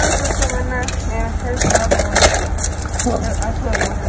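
Paper bag and wrappers crinkling and rustling with short crackles as a fast-food order is handled inside a car, over a low steady hum from the idling engine.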